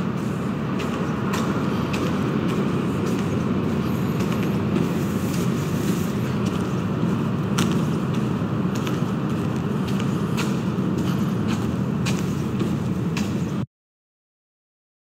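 Footsteps clicking about once or twice a second in a concrete pedestrian tunnel, over a steady low rumble. The sound cuts off abruptly just before the end.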